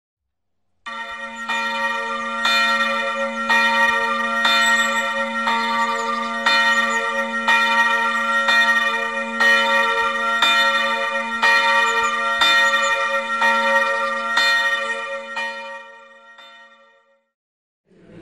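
Church bell ringing, about one stroke a second, over its steady low hum. It starts about a second in and dies away near the end.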